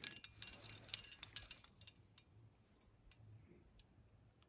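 Near silence, with a few faint clicks and ticks in the first two seconds that then die away.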